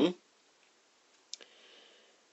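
The end of a spoken word right at the start, then quiet room tone with a single short click about a second and a third in.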